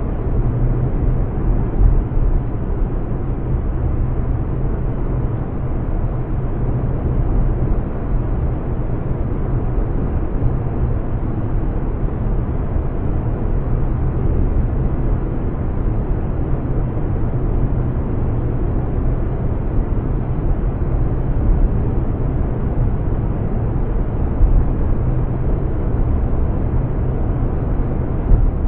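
Steady road noise inside a car cruising on a freeway: tyre and engine rumble, heaviest in the low end, with no breaks.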